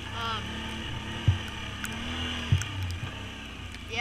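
Can-Am Outlander ATV engine running at a steady, low trail speed, with two dull thumps a little over a second apart as the quad jolts along the trail.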